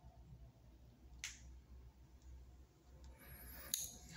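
Near silence: quiet room tone with a faint low hum, a single soft click about a second in and another just before the end.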